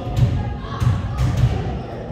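Basketballs bouncing on a hardwood gym floor: several irregularly spaced thuds with a reverberant boom in the large hall.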